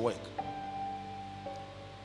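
Soft background music of held, sustained notes under a pause in a man's preaching, a new note sounding about half a second in and another about a second and a half in.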